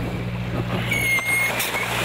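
Dive-boat engine hum under wind and sea noise, with a brief high whistling tone about a second in.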